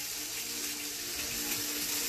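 Olive oil poured in a steady stream from a small glass cup into a bowl, a soft continuous trickle.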